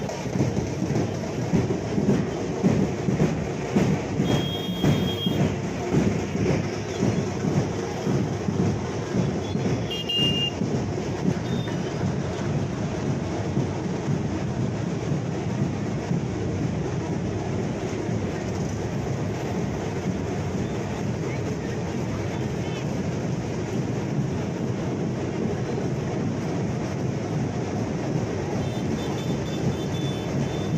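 Street procession din: a low, dense rumble with crowd voices, and rapid loud beats, like drumming, through the first ten seconds or so, settling into a steadier roar.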